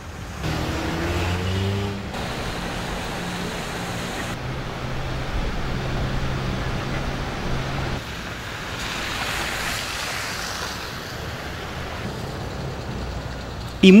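Traffic on flooded streets: car engines running under a steady hiss and wash of water, the sound of tyres ploughing through standing water. The sound shifts abruptly several times.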